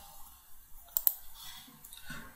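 A single sharp computer mouse click about a second in, over faint room hiss.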